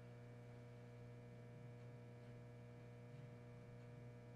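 Near silence: a steady low electrical hum.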